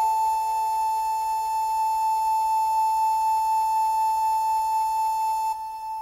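Electronic keyboard holding one long, steady, high flute-like note in slow meditative music; the note ends about five and a half seconds in.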